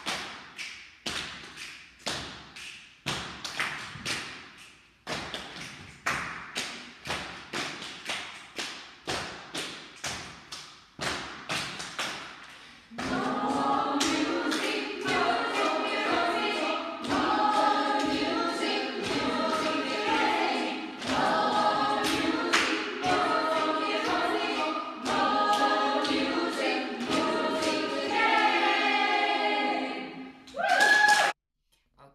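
A group of adults doing body percussion, hand claps and body strikes in a steady rhythm of about two to three a second. About 13 seconds in they begin singing a song together over the percussion, and the singing becomes the loudest sound.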